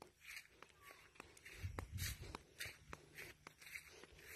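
Faint footsteps and rustling through grass, with irregular soft clicks and a few low thumps about halfway through.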